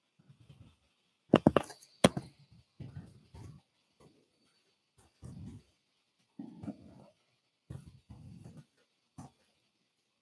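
Scattered keyboard keystrokes, the loudest about a second and a half and two seconds in, with faint low vocal sounds between them.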